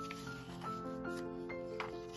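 Paper pages of a spiral-bound planner being turned and smoothed by hand, a light rustling and rubbing, over background music of held melodic notes.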